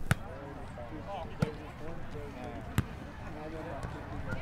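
Background voices chattering, cut by three sharp smacks spaced about a second and a half apart.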